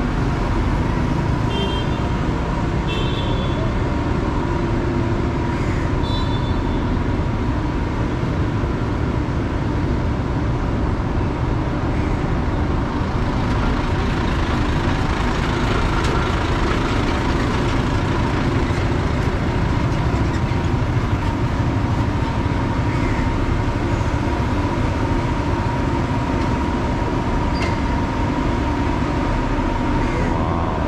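Steady city street traffic noise, with the running engines of nearby motor vehicles and a constant hum. A few brief high beeps come near the start.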